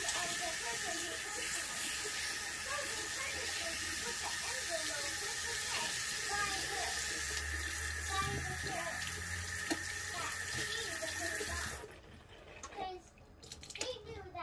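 Sink tap running steadily, then shut off abruptly about twelve seconds in.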